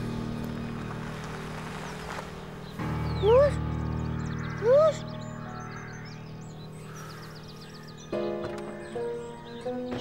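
Dramatic background score of sustained tones, with two short, loud upward-gliding calls about three and five seconds in; a new sustained chord comes in near the end.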